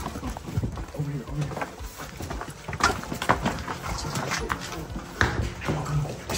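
Several people's hurried footsteps and scuffs, with scattered knocks and rustling as they move quickly into the house.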